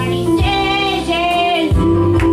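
A woman singing a church hymn into a microphone, holding long notes that slide between pitches, over amplified instrumental accompaniment with a steady bass.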